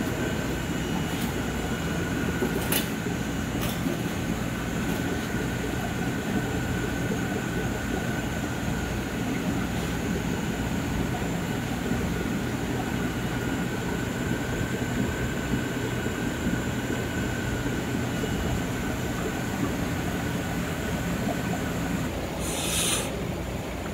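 Steady hum and rush of a fish room's aquarium equipment, with a faint steady whine throughout and a few light clicks in the first few seconds.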